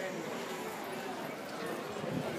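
Faint, indistinct voices of people talking in the background, over a steady murmur of ringside noise.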